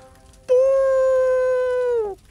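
One long horn-like blast, made by a man blowing into his cupped hands in imitation of a war trumpet; it starts about half a second in, holds a steady pitch and sags in pitch as it dies away.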